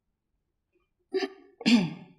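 Near silence, then two brief voice sounds from a woman, one about a second in and one near the end, the second falling in pitch.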